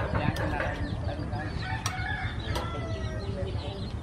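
Chickens clucking and a rooster crowing in the background, with a few sharp clicks like a metal spoon against a ceramic bowl.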